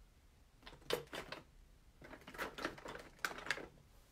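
Clear photopolymer stamps being mounted on an acrylic stamp block: a run of light clicks and taps, one cluster about a second in and another from about two to three and a half seconds.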